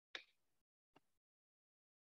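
Near silence broken by a short, sharp click just after the start and a much fainter click about a second in: mouse clicks advancing the shared presentation slide.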